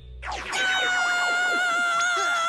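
A cartoon boy's long, high-pitched scream of shock, held on one pitch and starting to waver near the end, after a quick run of falling swoops just before it.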